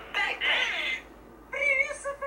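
Vocals from a Dutch rap music video: a short voiced phrase, a brief lull about a second in, then a high, wavering drawn-out voice near the end.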